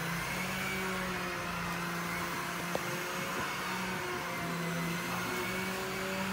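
Steady mechanical hum of a running motor, with a faint click near the middle.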